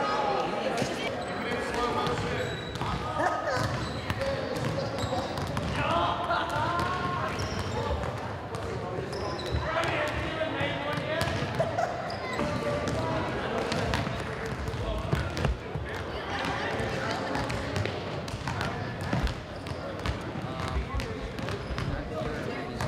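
Indistinct voices and chatter echoing in a large gymnasium, with scattered short knocks and thuds on the hardwood floor.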